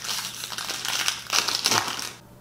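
Foil wrapper of a Pokémon booster pack crinkling in the hands as it is handled and opened: a dense run of crackles, loudest a little past the middle.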